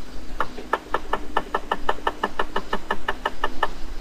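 A rapid, even run of about twenty computer mouse clicks, roughly six a second, as a PDF is paged back through, over a faint steady hum.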